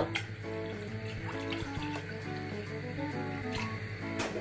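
Water pouring from a plastic bottle into a stainless steel saucepan, a steady splashing stream, under background music.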